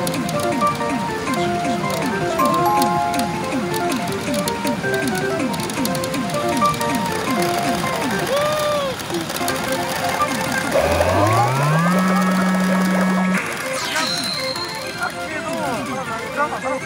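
Electronic game music and sound effects from a Great Sea Story 5 (Umi Monogatari) pachinko machine. A quick run of falling blips is followed by a rising sweep about eleven seconds in and a short high beep near the end.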